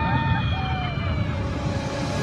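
High-pitched cartoon Minion voices calling in drawn-out, falling notes over a steady low rumble.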